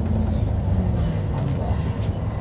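Steady low rumble of a moving bus heard from inside the passenger cabin.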